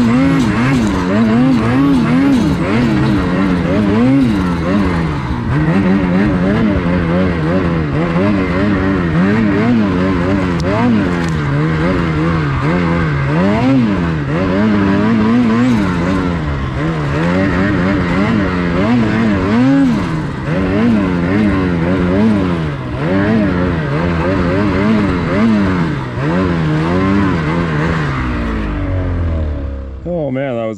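Ski-Doo 850 E-TEC Turbo R two-stroke snowmobile engine revving up and down over and over as the throttle is worked, its pitch climbing and falling every second or two. Just before the end it drops away as the sled stops.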